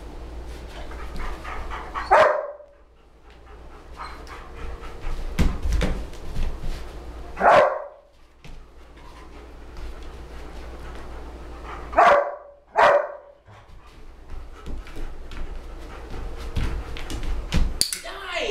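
German Shepherd barking, four single loud barks several seconds apart, the last two close together.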